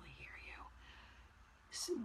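A woman whispering very faintly, words too soft to make out, acting out a speaker who talks so softly she can barely be heard. A short hiss comes near the end.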